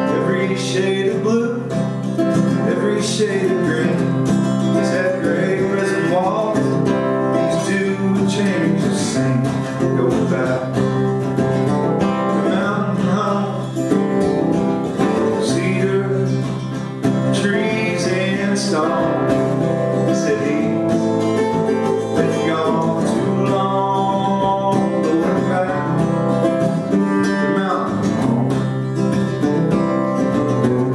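Acoustic guitar played live in an instrumental break between sung verses of a country-folk song, with steady plucked and strummed chords throughout.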